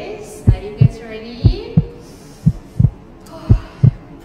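Heartbeat sound effect laid in for suspense: paired low thumps (lub-dub) about once a second, over a faint sustained tone.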